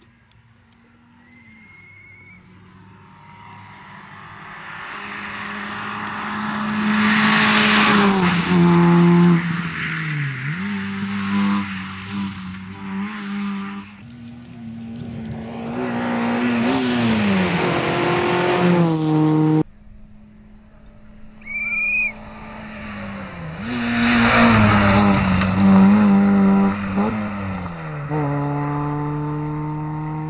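Renault Clio rally car driven hard on a sprint stage: its engine revs climb, then drop sharply as the driver lifts and changes gear for the bends, again and again. It swells loud as the car comes close and fades as it pulls away, heard in two passes.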